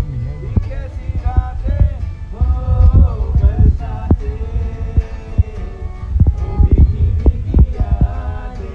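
Live acoustic music, a violin melody over acoustic guitar, with a heavy low thumping under it throughout.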